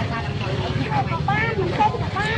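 People talking over the steady low rumble of a motorbike engine running close by.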